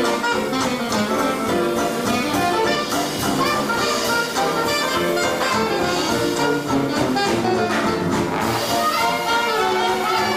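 A traditional 1920s-style jazz band playing live: saxophone, trumpet and trombone over sousaphone and drums.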